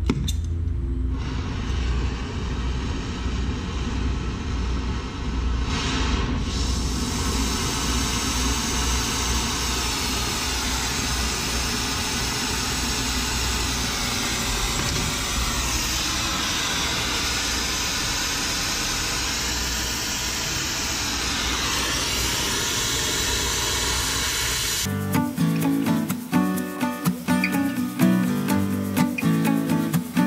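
Steady hiss and rumble of a small oxy-acetylene torch with a welding tip, burning while it heats a fitting for soldering. About five seconds before the end, acoustic guitar music takes over.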